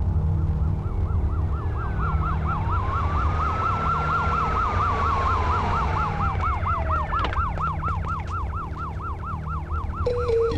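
Vehicle siren warbling rapidly, about four rises a second. A slower wail rises and falls over it through the middle. A steady low rumble runs beneath.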